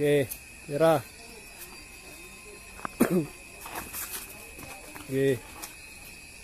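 Mostly speech: a man calling out "oke" four times in short shouts, with a faint steady high tone in the background.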